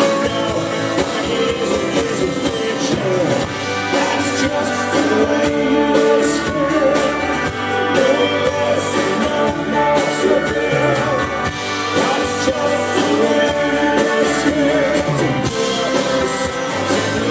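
Live rock band playing, with acoustic guitar, electric bass and keyboards, heard from the audience.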